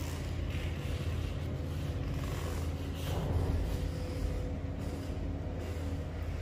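Heavy rain drumming on the roof, heard from inside a toilet block as a steady low rumble.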